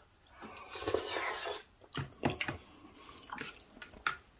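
Mouth sounds of eating hot braised beef: a breathy puff of air over the too-hot mouthful, then wet chewing with small clicks and smacks.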